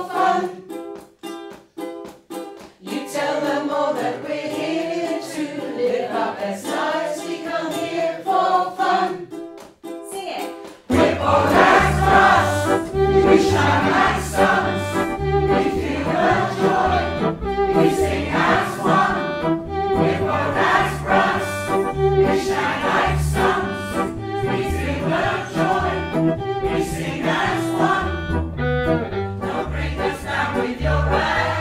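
A small group of amateur singers sings a song together to ukulele strumming. About eleven seconds in, this gives way to a large choir singing louder over a low accompaniment on a regular beat.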